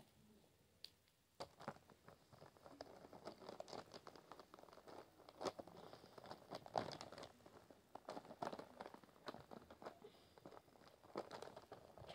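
Faint, irregular clicking and rattling of plastic markers knocking against one another as a hand rummages through a plastic pouch full of them, starting about a second and a half in.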